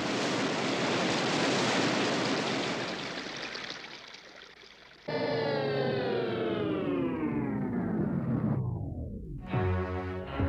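Cartoon sound effect of rushing dam water that fades away over the first few seconds as the flow is cut off. Then, after a sudden start, the whine of a power-station turbine-generator falls steadily in pitch as it winds down and loses its power, ending in a low thud.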